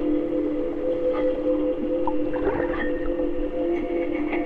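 Ambient sound-art music: a steady drone of several held low tones, with scattered clicks and short squeaky glides of underwater sound from a hydrophone recording of river water.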